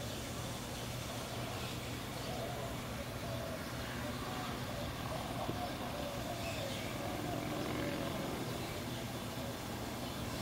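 Steady low background hum, with faint wavering higher sounds drifting in and out.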